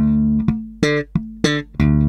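Electric bass played slap-style, slowly: a thumb-slapped note rings at the start, followed by short muted dead notes and bright popped notes, then another thumb-slapped note held near the end.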